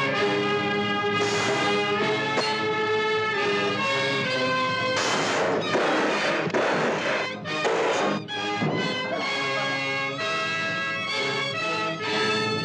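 Orchestral film background score with brass and strings holding sustained chords. There are louder, noisier crashing passages about five and seven seconds in.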